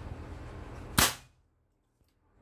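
A single sharp shot from a Bengal X-Trabig Tactical PCP air rifle about a second in, one round of a chronograph velocity test with 14-grain pellets.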